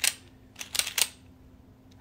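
A few short, sharp clicks: one at the very start, a quick pair a little before a second in, and one more at about a second.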